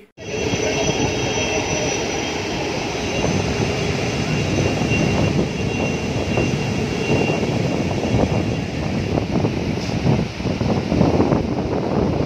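Steady roar of rough surf and wind from waves breaking on a beach, with a faint steady high whine over it.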